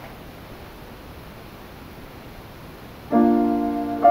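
Steady faint hiss of room noise, then about three seconds in an upright piano sounds its opening chord, several notes struck together and left ringing.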